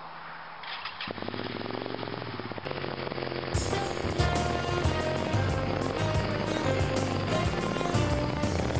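A V-twin motorcycle engine picks up and runs hard from about a second in. Halfway through, music with a steady drum beat comes in over it and becomes the loudest sound.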